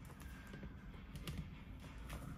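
Faint handling noise: a few light clicks and taps, scattered and irregular.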